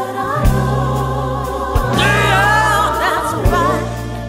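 Soul-blues song: a woman sings long, bending vocal lines over a band with a deep bass line.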